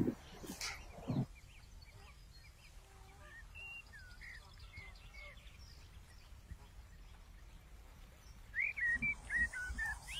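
Small birds chirping and calling in short rising and falling notes, growing louder near the end, with two short sharp knocks in the first second or so.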